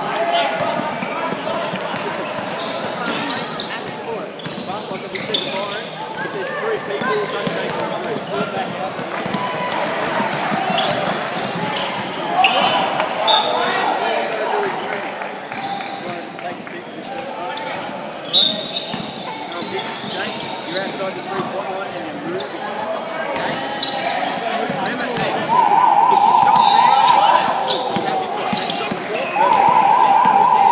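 Indoor basketball game in an echoing hall: players' and spectators' voices, with a basketball bouncing on the hardwood floor. Two short high-pitched blasts come in the middle, and a loud buzzing tone sounds twice near the end.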